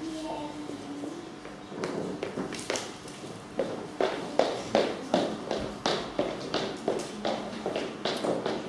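Thin Bible pages being leafed through by hand close to the microphone: a run of short, crisp flicks and rustles, about two or three a second, starting about two seconds in.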